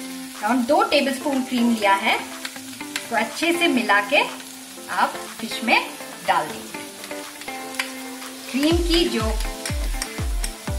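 Fish curry gravy sizzling and simmering in a frying pan as cream is spooned in, under background music. A steady deep drum beat comes in near the end.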